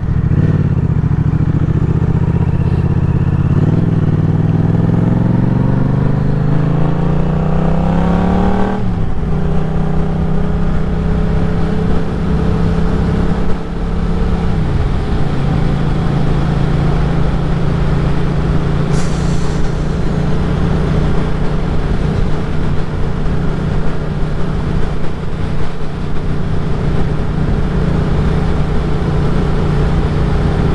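Yamaha MT-07's parallel-twin engine under hard acceleration, its pitch climbing for about nine seconds, then dropping sharply with an upshift. A second drop comes about fifteen seconds in, then the engine settles to a steady cruise under a constant rush of wind noise.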